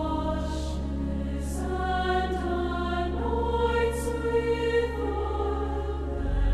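Student choir singing in sustained, slowly moving harmony over steady low held notes, with a few soft sung consonants, near 0.6, 1.5 and 4 seconds, standing out.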